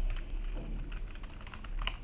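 Typing on a computer keyboard: a run of light, irregular keystroke clicks.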